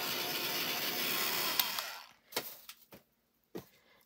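Craft heat tool blowing steadily as it dries freshly stamped black ink on card, switched off about halfway through. A few light knocks follow.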